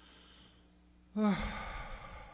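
A man's sigh into a microphone about a second in: a short voiced sound falling in pitch that trails off into a long breathy exhale.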